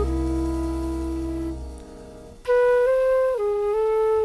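Jazz flute with a piano trio, from an early-1960s studio recording. A held chord over a low bass note dies away to a brief quiet moment about halfway through, then the flute comes in with a clear phrase of stepped notes.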